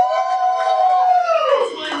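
One person's long, high-pitched whoop, rising into a held note for about a second and a half and then falling away.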